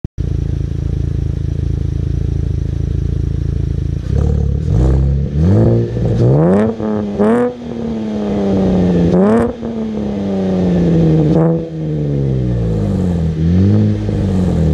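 2012 Chevrolet Camaro LS's 3.6-litre V6 through a Borla aftermarket exhaust, idling steadily, then revved in a quick series of blips starting about four seconds in. After the blips come two longer held revs, and then the engine drops back toward idle.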